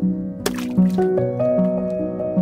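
Soft instrumental background music with slow, steady notes, and a short noisy burst about half a second in.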